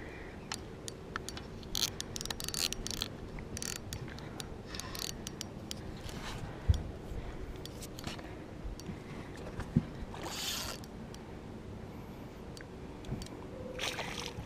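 Spinning fishing reel being cranked to bring in a hooked fish: a steady low whir from the reel's gears with scattered light clicks, and two dull knocks partway through.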